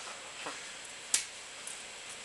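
Quiet room hiss with one sharp, short click about a second in.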